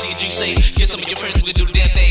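Hip-hop track with rapping over a beat of heavy bass kicks and hi-hats, the kicks landing in quick pairs in the second half.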